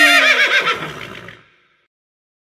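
A horse whinnying: the tail of one long, quavering call that falls slowly in pitch and fades out about a second and a half in.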